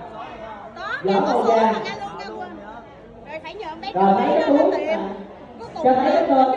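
Speech only: people talking in conversation, with short pauses between turns.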